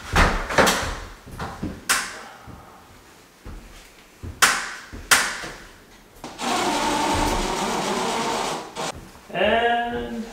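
Cordless drill running steadily for about two and a half seconds, with sharp knocks and clatter from the wall work before it. A brief voice sounds near the end.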